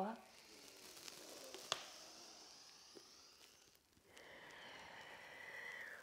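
Faint human breathing: a long exhale, a brief pause, then an inhale, with one small click about two seconds in.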